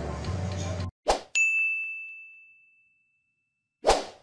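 Outro sound effect: a quick whoosh, then a single bright bell-like ding that rings out and fades over about a second, with another whoosh near the end.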